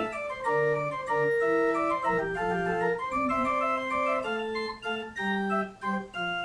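Organ playing hymn chords in steady held notes, the harmony moving to a new chord about every half second to a second.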